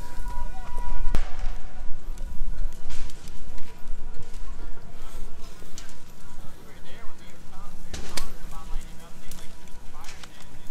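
Ambience beside large fires: a continuous low rumble, faint distant voices and a faint steady high tone, broken by a few sharp knocks or pops about one, three and eight seconds in.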